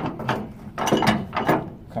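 Flatbed trailer strap winch being turned by hand, its ratchet pawl clicking in several short bursts as the tie-down strap winds onto the drum. The slack is being taken up to bring the strap hand tight.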